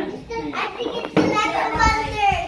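Young children's high-pitched voices, chattering and calling out without clear words.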